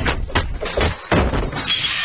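Several loud crashing hits, a few tenths of a second apart, with a shattering quality.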